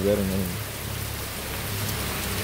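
Heavy rain falling on waterlogged ground and puddles, a steady hiss.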